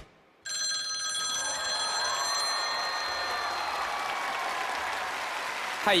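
A phone's electronic call tone picked up by a stage microphone. It comes in sharply about half a second in, holds steady for about two and a half seconds, then fades into fainter gliding tones. The call to the target phone does not get through, a sign that the recalled number is wrong.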